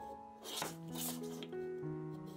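Two short scraping strokes of a hand tool on wood, about half a second and one second in, over soft piano music.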